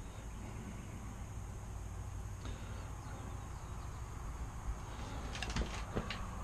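Quiet handling of a small fishing-reel spool as old monofilament line is pulled off it by hand, over a low steady background hum. A few light clicks come near the end.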